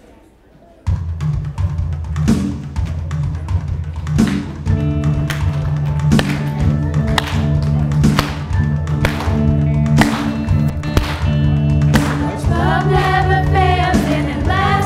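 A live band with electric guitar and drums starts a worship song about a second in, playing an intro with a steady drum beat; voices join in singing near the end.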